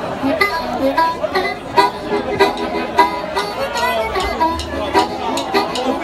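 Live blues band starting a song: amplified harmonica and electric guitar play over a steady beat of about two hits a second, and bass joins a little past halfway.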